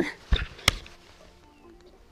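A low thump, then about half a second later one sharp click: knocks from rod, reel and boat handling while a hooked musky is brought to the net.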